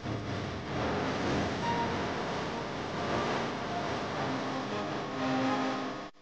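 Cars and SUVs in a slow street procession: steady engine and road noise, with a couple of short held tones near the end.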